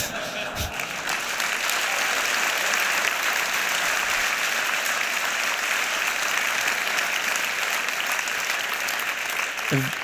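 Large audience applauding, a steady, dense clapping that holds level and eases off just before the end.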